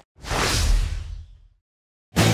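A whoosh sound effect with a deep, booming low end for the logo reveal. It swells in almost at once and fades out over about a second and a half.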